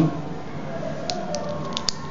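About five light, sharp clicks in the second half, from hands handling a small screwdriver and the drive-mounting parts inside an open MacBook Pro while securing a new SSD in its bay.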